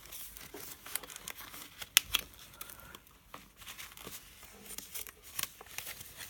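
Paper pages rustling and crinkling as a folded signature is handled and pushed under the twine binding strings of a handmade journal, with scattered light taps and one sharp click about two seconds in.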